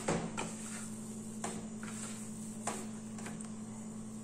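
Hands kneading a crumbly cornmeal dough in a plastic bowl: soft handling noise with a few faint knocks against the bowl.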